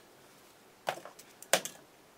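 Small fly-tying tools being handled on the bench: a few sharp clicks and taps, one about a second in and the loudest a moment later, as the whip-finish tool is taken up.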